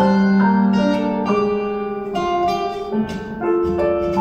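Acoustic guitar and piano playing an instrumental passage of a song together, plucked guitar strings over sustained piano chords.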